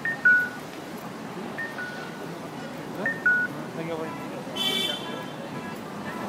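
Electronic two-tone chime, a high note followed by a lower one, sounding three times about one and a half seconds apart, with people talking around it. A short buzzy tone sounds a little before five seconds in.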